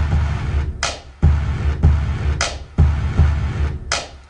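Programmed drum-machine beat at 90 BPM playing back from an online beat maker: a heavy low kick-and-bass line with short gaps, punctuated by a sharp snare hit about every second and a half.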